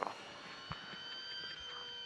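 Onboard sound of a Jaguar Gen3 Formula E car's electric powertrain: a steady whine of several high fixed tones as the car crawls back with a suspected front-end fault, thought to be the front drive shaft. A single click about two-thirds of a second in.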